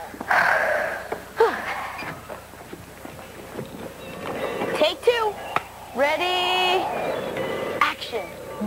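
Children's voices in short bursts without clear words, with a held, steady note about six seconds in.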